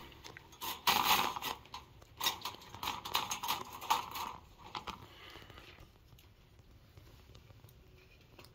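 Dry hay bedding rustling and crunching, with light scrapes against a wire rabbit cage, as a hand rummages in among rabbit kits. The sound comes in irregular bursts for about the first four seconds.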